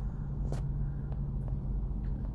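Car engine idling with a steady low hum, heard from inside the cabin, with a faint click about half a second in.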